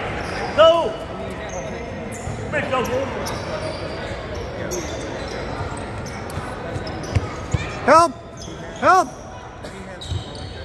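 A basketball bouncing on a hardwood gym floor amid echoing voices in a large hall. Short sneaker squeaks come near the start, and the two loudest come close together near the end.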